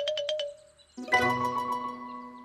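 Cartoon sound effect of rapid knocking on a tree trunk, about ten knocks a second over a ringing tone, stopping about half a second in. A held musical chord starts about a second in.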